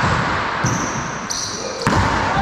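A paddleball ball being struck and rebounding in an enclosed racquetball court, each hit echoing off the walls, with a sharp crack near the end. Short high squeaks, typical of sneakers on the hardwood floor, come in between.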